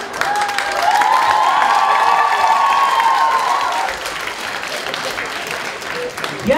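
Audience applauding a stand-up comedian's punchline, loudest for the first few seconds and then easing off. A long held high note rides over the clapping until nearly four seconds in.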